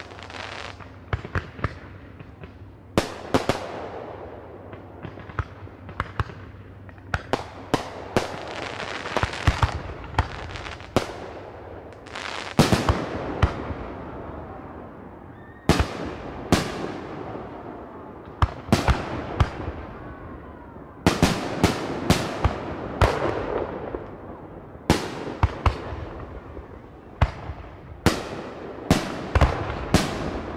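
Fireworks going off: a long run of sharp bangs at irregular intervals, often several in quick succession, each trailing off in an echo.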